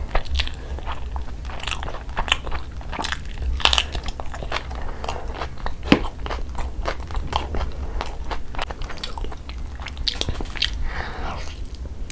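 Close-miked chewing of tandoori chicken, with many wet mouth clicks and smacks, a sharp snap about six seconds in as meat is torn from the whole chicken, and a short sucking sound near the end as sauce is licked off the fingers.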